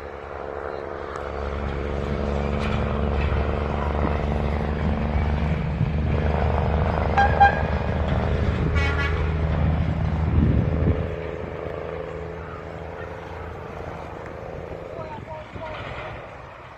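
An engine drones past, growing louder over the first couple of seconds and fading away after about eleven seconds. A brief higher sound comes about seven seconds in.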